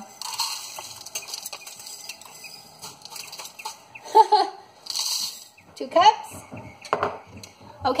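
Dry shreds of dehydrated hash browns poured from a glass mason jar into a measuring cup over a funnel: a dry rattling rustle with many small clicks, strongest at the start and again about five seconds in. Brief wordless vocal sounds come between the pours.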